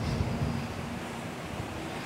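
Outdoor background noise: a low wind rumble on the microphone, with a faint steady low hum that fades out partway through.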